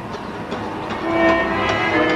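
Dramatic background score: a sustained chord of held notes swells in about a second in, over a steady rumbling noise bed.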